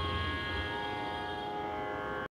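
Electronic tanpura (shruti box) sounding its steady drone, many held tones with no singing over them. A low hum underneath drops away about half a second in.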